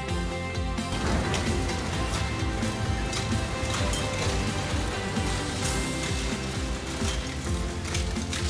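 Background music over the rumble and clatter of scrap-metal processing machinery, starting about a second in, with many short knocks in the noise.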